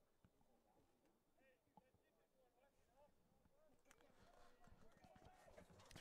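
Near silence, with faint distant voices that grow a little in the last two seconds.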